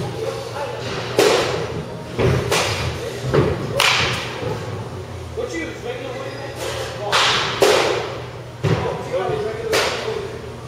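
About six sharp impacts of baseballs in an indoor batting cage, bat on ball and balls striking netting, at uneven intervals, each with a short echo in the hall.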